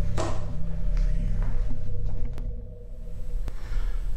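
Low steady rumble with a faint sustained hum and a few faint taps, from the soundtrack of ghost-hunting footage recorded in a dark church.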